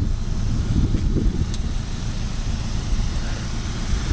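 Low, uneven rumble of wind buffeting the microphone, with a faint click about a second and a half in.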